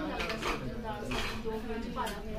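Light clicks and clinks of kitchen utensils being handled, under women's voices talking.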